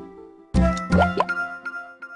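Children's TV ident jingle. A new musical note starts about half a second in, two quick upward-sliding plop sounds follow about a second in, and the music then fades.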